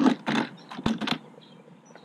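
Ninebot One C+ electric unicycle being laid down on its side on asphalt: a quick run of clicks and knocks from its plastic shell and wheel over about the first second.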